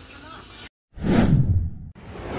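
Whoosh sound effect of an intro animation: a loud swish about a second in, right after a brief dropout to silence, that sinks in pitch as it fades over about a second.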